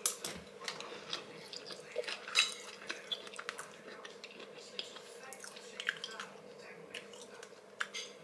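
A person chewing a mouthful of couscous close to the microphone: quiet, with scattered small wet mouth clicks and smacks.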